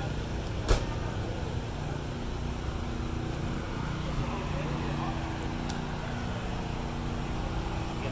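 A motor running steadily with a low, even hum, under indistinct voices, with one sharp knock about a second in.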